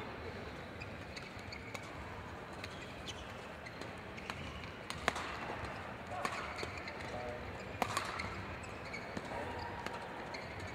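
Badminton rackets striking a shuttlecock in a doubles rally: a sharp hit every second or so, with players' shoes on the court, over the steady background of a sports hall.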